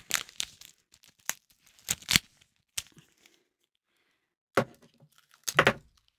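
Sellotape being pulled off the roll and torn, in a series of short rips with a pause in the middle.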